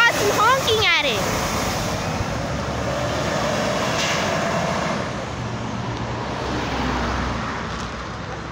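Prevost motor coach's diesel engine and tyres as the bus pulls away and drives off, a steady rumble that slowly fades as it moves away. A voice is heard in the first second.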